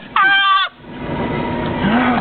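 A person's high-pitched squealing laugh, one held note about half a second long early on, after a few short rising yelps, followed by a quieter background murmur.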